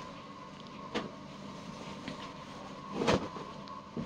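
Cotton dress fabric rustling as a ready-made three-piece is handled and unfolded, with one louder swish about three seconds in as the garment is lifted, over a steady low background hum.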